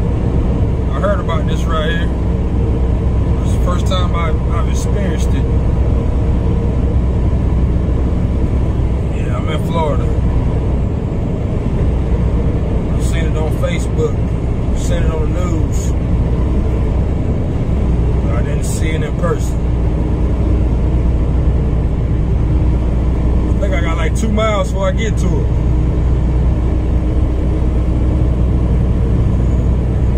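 Semi truck's diesel engine and road noise droning steadily inside the cab at highway speed, broken by a few short stretches of a voice.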